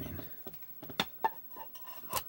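Two sharp clinks of hard objects about a second in, a quarter-second apart; the second rings briefly with a clear tone, and fainter ringing taps follow near the end.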